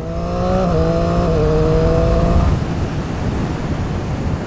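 Triumph Street Triple's three-cylinder engine accelerating, its note rising in pitch. About halfway through the engine note fades and wind rush on the helmet camera takes over.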